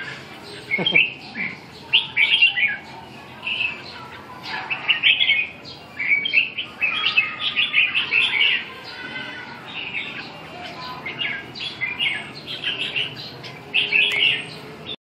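Several caged red-whiskered bulbuls singing and calling, short chirpy phrases following one another without a break.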